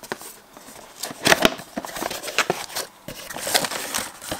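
Cardboard box being opened by hand: the tuck flap pulled free and the inner flaps folded back, in scattered scrapes and rustles, with a louder cluster about a second in.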